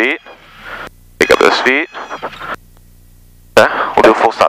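Speech over a light aircraft's intercom, broken by short pauses. In the pauses the engine, throttled back to idle, is heard only as a faint steady low hum.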